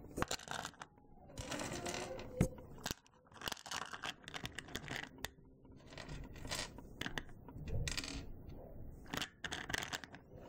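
Small polymer clay charms clicking and rattling against a clear plastic compartment box as they are handled, with irregular rustling and scraping handling noise.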